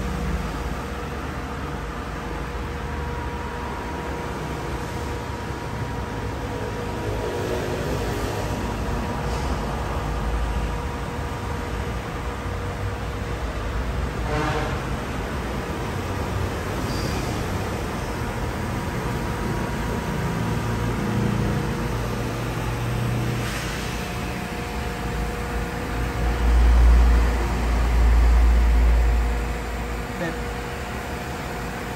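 Steady mechanical hum with a faint steady tone and a low rumble. A single click comes about halfway, and the rumble swells louder near the end.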